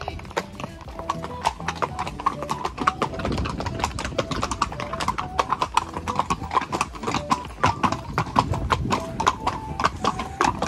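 Hooves of several walking horses clip-clopping on a paved lane, a quick, uneven run of sharp hoofbeats, with background music playing over it.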